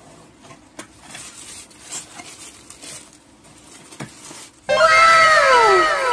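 Tissue paper rustling and crinkling as hands unwrap shoes in a cardboard box. About four and a half seconds in, a much louder edited-in sound effect cuts in: a string of echoing pitched tones, each falling in pitch.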